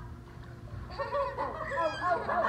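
Several people in a swimming pool shouting and squealing excitedly, with high, shrill cries starting about a second in, as they hoist a child to throw him.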